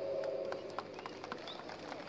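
A pause in an amplified speech: the public-address echo of the last word dies away, leaving the faint murmur of a large outdoor crowd, with a few faint ticks and a brief high chirp about one and a half seconds in.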